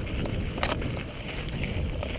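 Wind buffeting the microphone of a bike-mounted camera over the rumble of mountain-bike tyres rolling fast down a dirt trail, with a sharp rattle about a third of the way in.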